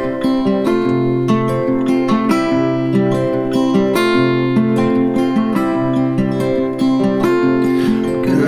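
Two acoustic guitars playing together in an instrumental passage, with a steady rhythm of picked notes over ringing chords.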